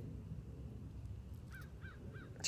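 A bird calls three times in quick succession near the end, faint over a steady low rumble.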